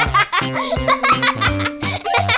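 Cheerful background music with a steady beat, with a baby giggling over it.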